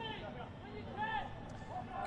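Faint open-stadium ambience with distant voices calling out twice, once at the start and again about a second in.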